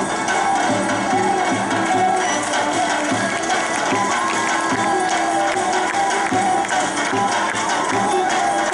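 Macedonian folk dance music: a wavering melody over a steady beat, with crowd noise underneath.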